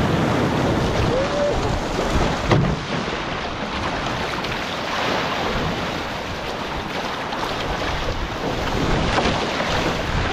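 Water rushing and splashing along the hull and outrigger float of a one-person outrigger canoe moving at speed, with wind buffeting the microphone. A single sharp knock about two and a half seconds in.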